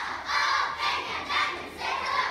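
A squad of young girl cheerleaders shouting a cheer in unison, in short chanted phrases about twice a second.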